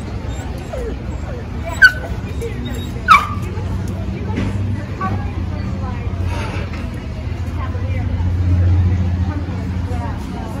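A dog barking twice, two short loud barks about a second apart, over background chatter.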